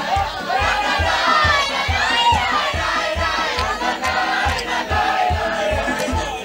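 Music with a steady low beat under a group of performers singing and shouting together, some voices swooping up and down in pitch.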